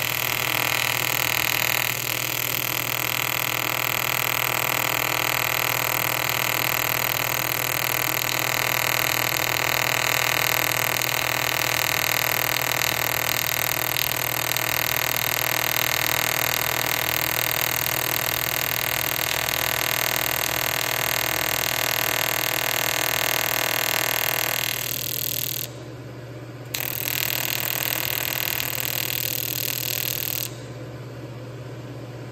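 AC TIG welding arc on an aluminium tank, a steady buzz. The arc stops for about a second near the end, then strikes again.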